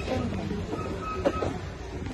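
Shop background noise: a steady low rumble with faint distant voices, and a brief knock a little past a second in.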